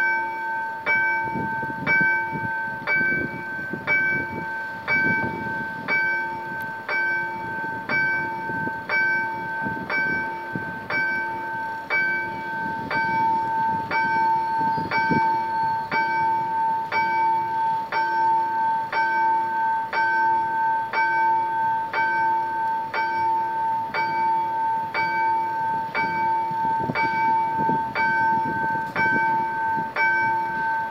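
Level-crossing warning bell ringing, struck evenly about once a second with each ring carrying into the next. It signals that the crossing is closed for an approaching train.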